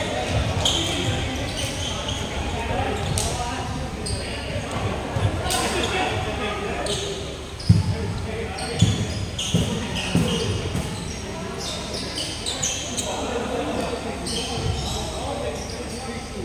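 Basketball bouncing on a hardwood gym floor, with two sharp thuds about eight and nine seconds in standing out, mixed with players' voices, all echoing around a large sports hall.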